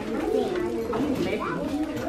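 Young children's voices chattering and talking over one another, unclear and overlapping.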